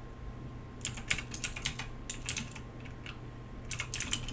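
Computer keyboard being typed on: short runs of key clicks start about a second in, pause, then come again in a quick run near the end.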